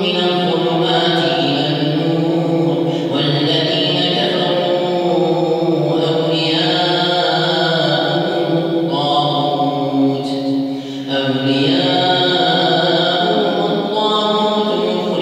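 An imam reciting the Quran aloud in the slow, melodic chanted style of tahajjud night prayer, a single male voice drawing out long held notes with a brief breath pause near the middle.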